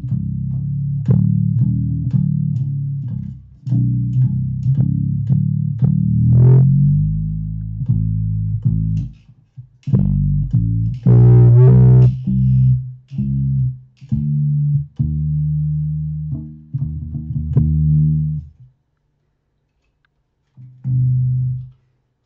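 Hoosier whamola, a single-string electric bass, playing a bass line. The string is struck with a click at the start of each note, and its pitch is moved up and down in steps. The playing stops a few seconds before the end, and one short note comes shortly after.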